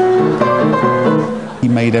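Upright piano played deliberately off-key, a run of quick melody notes over chords with calculated wrong notes, fading about a second and a half in. A man's voice begins near the end.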